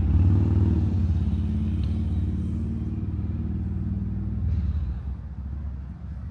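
An engine running with a low, fast-pulsing rumble that sets in suddenly and fades away about five seconds in.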